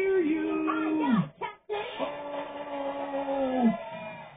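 A man's voice singing a long held note over guitar, played back through a computer's speakers; it breaks off briefly after about a second, then a second long held note comes in and falls in pitch as it ends.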